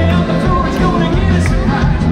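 Live rock band playing loudly through a concert PA, with drum kit, bass and electric guitars, heard from among the audience.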